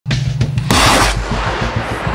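An ejection seat firing in a test: a single loud blast a little under a second in, lasting about half a second, then a hiss dying away. Background music plays underneath.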